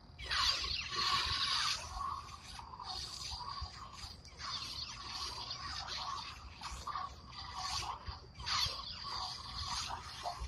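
Lightsaber sound effects as the saber is spun and swung: a run of whooshing swells, one after another, the loudest in the first couple of seconds and another near the end.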